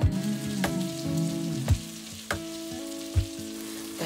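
Food sizzling as it fries in a pan, an even hiss, with background music playing under it.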